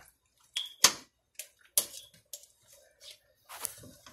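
Snow crab legs being pushed into a pot of seafood-boil liquid: a scattered series of short, sharp knocks and clicks of hard shell against the pot and against other shells, with light wet splashing. The loudest knock comes about a second in.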